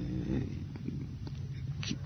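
A man's drawn-out hesitation sound trailing off and falling in pitch during the first half second, then a pause in speech with a low steady hum in the old radio recording.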